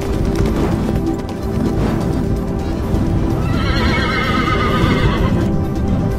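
A horse galloping, with rapid hoofbeats, over music. A long, wavering horse whinny comes in about three and a half seconds in and lasts about two seconds.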